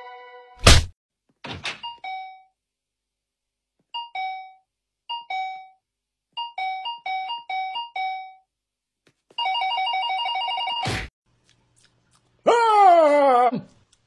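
Two-tone doorbell chime rung over and over: a ding-dong, a couple more, then several in quick succession, then a fast continuous ringing for about a second and a half. A loud knock comes just before the chimes and another right after the ringing, and near the end a sliding tone falls in pitch.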